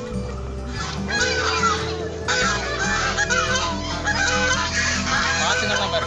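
A flock of white domestic geese honking, many overlapping calls, starting about a second in and continuing.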